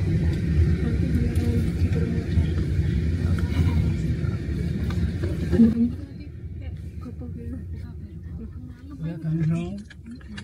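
Indistinct talking over a loud low rumble, which drops off suddenly about six seconds in, leaving quieter voices.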